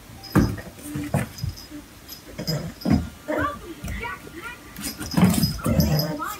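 A cardboard box knocking and rustling as a baby pulls at its flap, three sharp knocks in the first three seconds, with short babbling vocal sounds later on.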